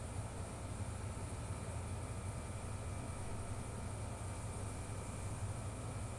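Steady low hum with a faint even hiss, unchanging throughout: background room noise.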